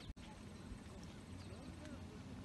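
Faint outdoor ambience: indistinct distant voices over a low rumble, with a few short high chirps. The sound cuts out for a split second just after the start.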